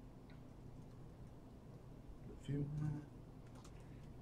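Faint typing on a laptop keyboard, a few scattered keystrokes, with a short low voice sound from a man about two and a half seconds in.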